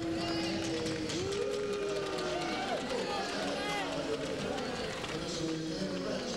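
Arena public-address announcer speaking over the rink's loudspeakers, with long drawn-out syllables, over scattered crowd applause.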